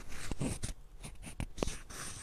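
Microphone handling noise as a hand adjusts a slipping microphone: a string of irregular knocks and sharp clicks with rubbing in between.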